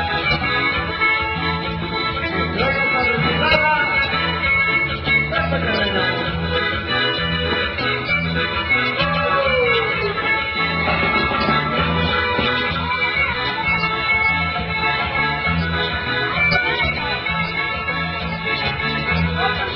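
Live dance music played loud, with held organ-like chords over a steady, pulsing bass beat.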